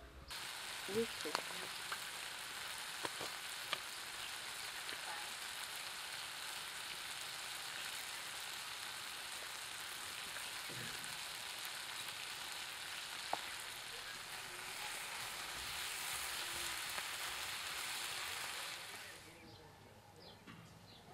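Chopped vegetables sizzling steadily as they fry in a pan, with a few sharp clicks of the spoon against the pan as they are stirred. The sizzle swells slightly, then stops abruptly near the end.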